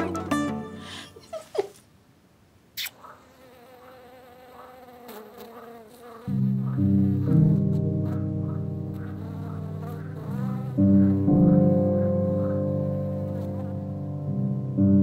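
A faint, wavering insect buzz in the quiet of night, like a mosquito's whine, rises and falls in short repeated passes. About six seconds in, a low, sustained orchestral score comes in and becomes the loudest sound, swelling again near the end.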